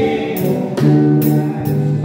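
Gospel hymn music: an electric guitar playing with a backing that has sustained notes and short high-pitched percussion hits about every half second.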